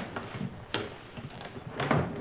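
Sharp knocks and clacks, three main ones in two seconds, from things being handled and set down while packing up at a bedside.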